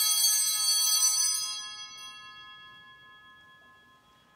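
Altar bells ringing at the elevation of the chalice after the consecration: a bright cluster of bell tones that rings on for about a second and then slowly dies away.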